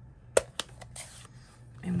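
Plastic ink pad case being opened: one sharp snap of the lid, then a couple of lighter clicks and a soft rustle of handling.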